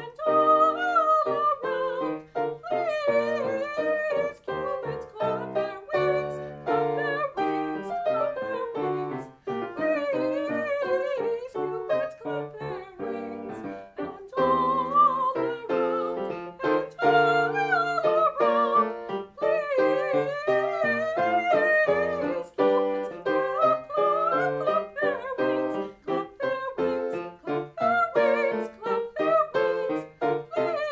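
A soprano singing a classical song with wide vibrato, accompanied by a Yamaha grand piano.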